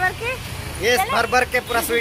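People talking in Hindi over a steady low rumble of street traffic.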